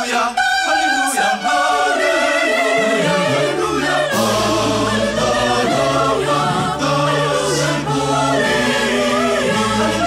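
Choir singing with musical accompaniment; a low, held bass note comes in about four seconds in.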